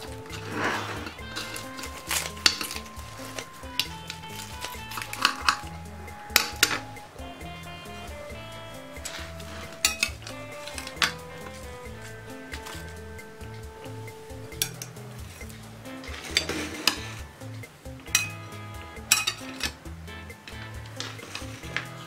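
Kitchen scissors snipping through crisp baked phyllo pastry and a metal cake server clinking and scraping on a plate, in irregular sharp clicks, over soft background music.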